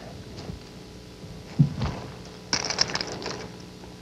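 A hooked bass thrashing at the surface beside a boat and being swung aboard on a crankbait: a low thump about a second and a half in, then a short burst of splashing and rattling clicks.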